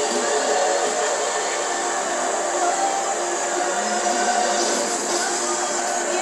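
Cartoon soundtrack sound effects: a steady rushing, machine-like noise with music underneath, played through a television speaker.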